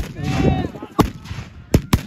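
Black-powder guns firing blank charges: four sharp shots, one right at the start, one about a second in, and two close together near the end.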